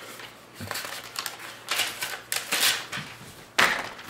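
A sheet of lined paper being handled, rustling and crinkling in short irregular bursts, the loudest near the end.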